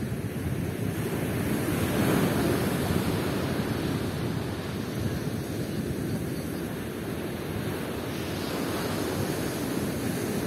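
Ocean surf washing onto a sandy beach, a steady wash of noise that swells a little about two seconds in, with wind noise on the microphone.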